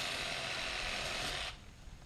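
A saw cutting through a palm frond stalk: one rasping cut that starts abruptly and stops sharply about a second and a half in.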